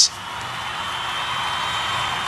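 Steady hiss with a faint, thin high-pitched tone running through it.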